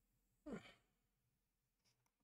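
Near silence, broken about half a second in by one short sigh from a man, falling in pitch.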